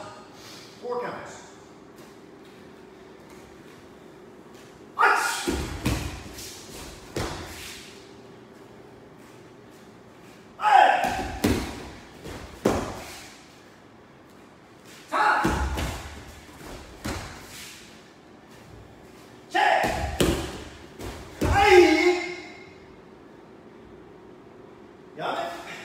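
Bare feet stamping and sliding on dojo mats during fast karate techniques, each burst with a forceful shout or exhale (kiai), in four bursts about five seconds apart; the last, near the end, is the loudest.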